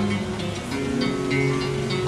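Acoustic guitar strummed and picked in a steady pattern, chords ringing between sung lines.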